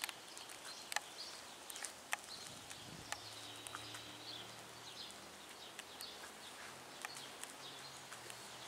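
Faint outdoor ambience of birds chirping, with a few sharp soft clicks scattered through it and a low faint hum that comes in about three seconds in.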